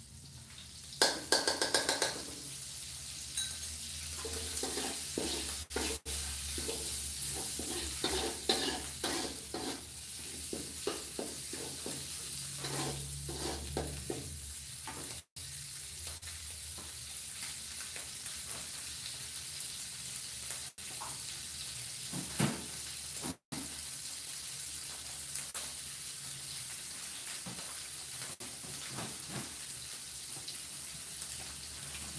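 Red spice paste sizzling as it fries in oil in a metal wok, with a steady hiss. A metal spatula scrapes the wok in a quick run of clicks about a second in, then in scattered stirring strokes over the first half. The sound drops out briefly twice near the middle.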